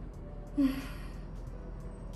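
A person smelling a perfume up close: one long sniff through the nose, starting about half a second in and lasting under a second.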